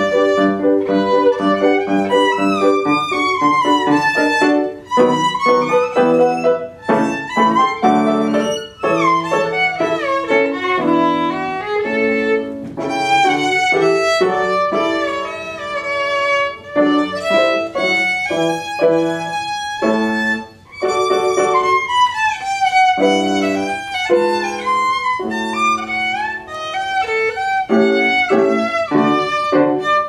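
Violin and grand piano playing a classical duet, the violin carrying a flowing melody with slides and vibrato over the piano accompaniment, with a few brief breaths between phrases.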